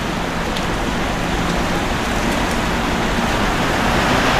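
A steady rushing hiss, like wind or rain, swells slowly louder under faint low sustained tones: a soundtrack sound effect.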